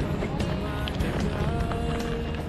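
Mountain bike rolling over loose, stony ground: tyres crunching on gravel with short rattles and knocks from the bike, over a steady rumble of wind on the microphone.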